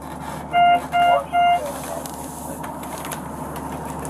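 Three short electronic beeps at one steady pitch, evenly spaced about 0.4 s apart, over the steady low hum of the ambulance compartment.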